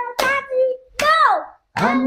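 Voices singing a gospel song in short phrases with hand claps, one sung phrase sliding down in pitch about a second in.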